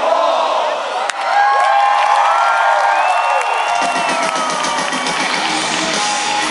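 Large concert crowd cheering and whooping while the band's music drops away, with one sharp click about a second in. A little over halfway through, the rock band's bass and drums come back in under the crowd.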